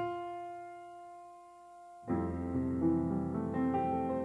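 Solo grand piano playing: a chord rings and fades for about two seconds, then a new low chord is struck with a line of single notes moving above it.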